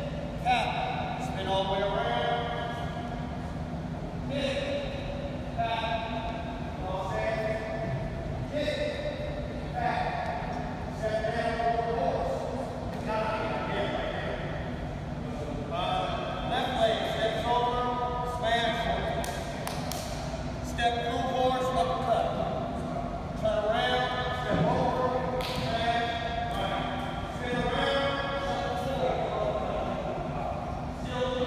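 Indistinct, echoing voices in a large gym hall over a steady low hum, with a few sharp thuds of feet landing on the wooden court floor.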